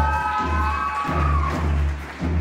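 Live band playing: a steady pulse of low bass notes under one held, pitched note that slides up, holds and breaks off about one and a half seconds in.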